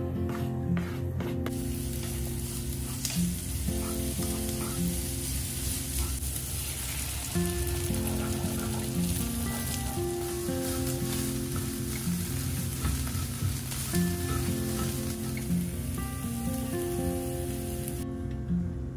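Diced carrots and green onion sizzling in hot oil in a small skillet while being stirred with a spatula, with beaten egg poured over them partway through. The sizzle is a steady hiss that runs until about the end.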